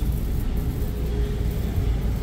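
Steady low rumble of indoor store background noise, with a faint thin held tone through the middle.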